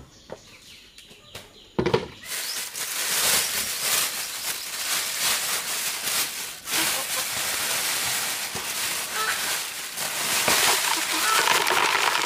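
Thin plastic bag crinkling and rustling as it is shaken and pressed into a plastic basin to tip out live crabs, starting abruptly about two seconds in and going on as a dense crackle.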